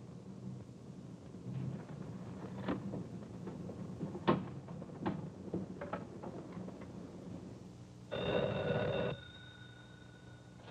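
Scattered clicks as a rotary desk telephone is dialled, then a telephone bell ringing once for about a second near the end, its tone trailing off faintly.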